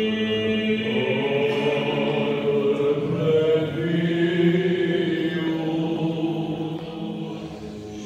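Orthodox liturgical chant sung a cappella, voices holding long notes that move slowly in pitch. The chant eases off near the end.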